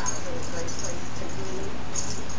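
Baby cooing: several short, soft vocal sounds that rise and fall in pitch, over a steady background hiss.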